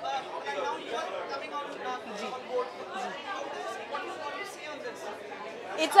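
Background chatter: many people talking at once, with no single voice standing out.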